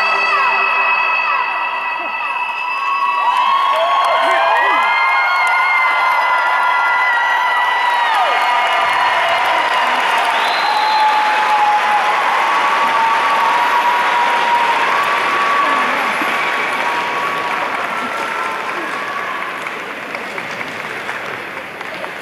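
Large arena audience applauding and cheering at the end of a song, with many high-pitched screams and shouts over the clapping. The last chord of the music dies away in the first couple of seconds, and the ovation slowly fades over the final several seconds.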